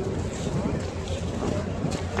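Wind rumbling on the microphone, with faint chatter of people in the background.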